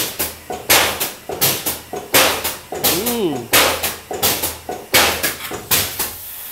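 Short, irregular bursts of hissing, one or two a second, from a high-pressure polyurea and foam spray machine. A brief rising-and-falling whine comes about halfway through.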